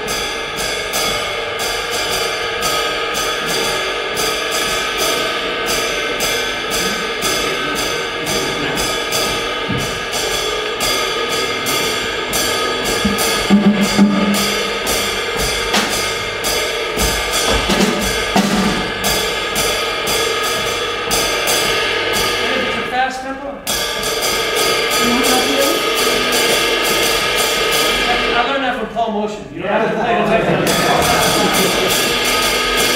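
Ride cymbal played with a drumstick, keeping jazz time: an even run of strokes over a steady ringing wash, with a few louder low hits around the middle. The playing breaks off briefly twice near the end.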